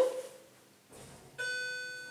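Lift's electronic arrival chime: a single pitched tone sounding about one and a half seconds in and fading away over about half a second. Before it, the tail of a louder sound dies away at the very start.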